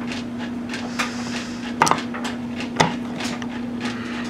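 Steady electrical hum from a Tesla hairpin circuit's high-voltage supply, with irregular sharp clicks and three louder snaps about a second apart, while its magnetically quenched spark gap is adjusted by hand.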